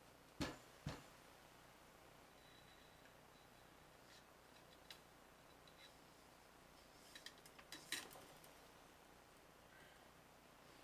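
Mostly near silence, broken by light handling noises from an AR-15 upper receiver and its cleaning rod: two sharp knocks within the first second, then a cluster of small clicks and scrapes around eight seconds in.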